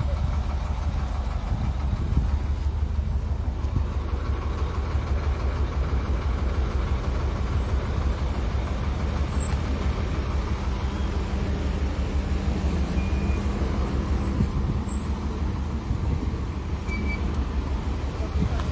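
Motor vehicles running close by: a steady low engine rumble with a faint hum above it. A short knock stands out about fourteen and a half seconds in.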